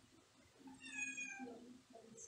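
A faint, short high-pitched call about a second in, falling slightly in pitch, over a faint low murmur.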